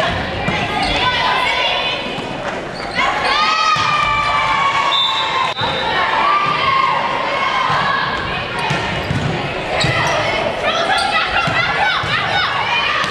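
Indoor volleyball rally on a gym court: a few sharp hits of the ball, high squeaks of sneakers on the floor, and players' calls and shouts, all echoing in the hall.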